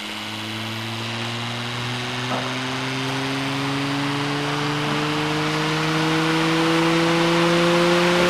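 Bedini-Cole window motor spinning up on its test run: a humming whine that rises slowly and steadily in pitch and grows louder, like a turbine.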